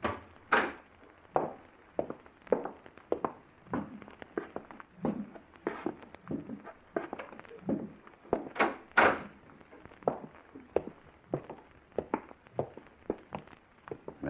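Radio-drama sound effects of footsteps walking at an even pace, about three steps every two seconds, as two people leave through a back door. A louder knock sounds near the start, and two sharper knocks come about nine seconds in.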